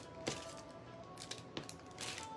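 Faint background music, with a few light clicks and rustles from small earrings and their packaging being handled.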